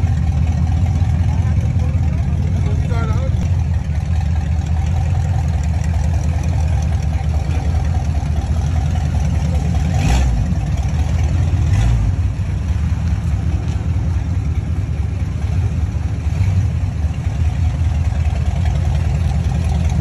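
Second-generation Chevrolet Camaro's engine running at a low, steady idle through its exhaust, with two short louder pulses a couple of seconds apart about halfway through.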